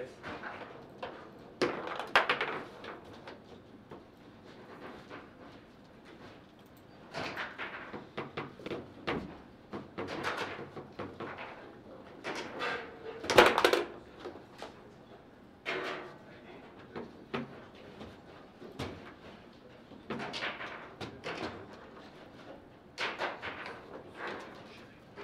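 Table football in play: the hard ball being struck and trapped by the plastic figures and rattling off the table walls, with the rods knocking at their stops. The knocks come in irregular clusters, the loudest about halfway through.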